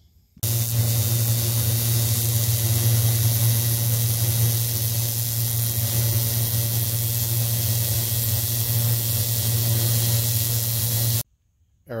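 Arc welding with a MIG welder: the arc runs steadily for about eleven seconds as an even hiss over a steady low hum, starting and stopping abruptly.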